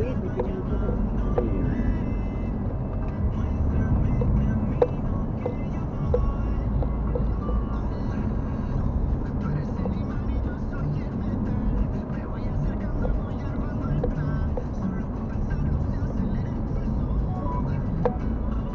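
Inside a moving car: steady engine and road rumble from driving, with faint voices and music underneath.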